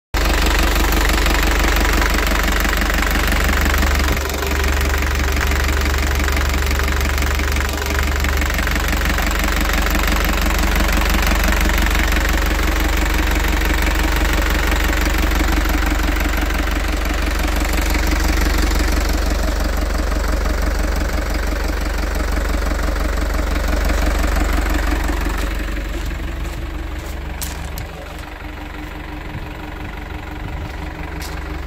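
Hyundai Mighty II truck's four-cylinder turbo diesel idling with a steady diesel clatter, heard close over the open engine bay. It gets somewhat quieter over the last few seconds, with a few faint clicks.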